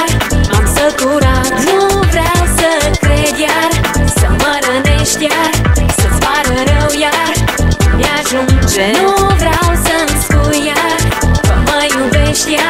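Romanian pop song with an electronic drum beat and bass under a wavering melodic lead line.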